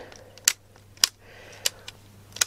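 Three sharp clicks about half a second apart, typical of a cassette Walkman's keys being pressed. The player, which has rust inside, is not working.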